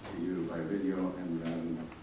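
A man's voice speaking indistinctly, with no clear words.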